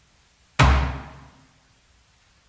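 The strepitus: a single sudden loud slam about half a second in, its reverberation dying away within about a second. It is the harsh noise that marks the closing of Christ's tomb at the end of the Tenebrae service.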